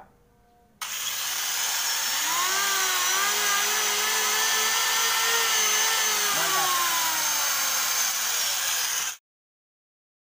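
An electric angle grinder and an electric hand planer run together at full speed, a loud steady motor whine with a high-pitched edge. The motors' pitch rises about two seconds in and sags near the end before the sound cuts off abruptly. Both run at once on a 450 VA household supply without the breaker tripping.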